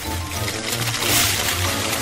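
Potato strips sizzling in hot oil in a frying pan, a hiss that swells about a second in, over background music with a steady bass line.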